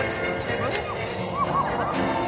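A dog giving a few short, high yips over music.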